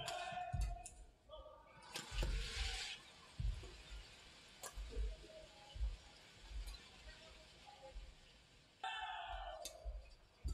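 Badminton rally: rackets striking the shuttlecock about once a second, with players' feet thudding on the court. Near the end, voices rise as the point finishes.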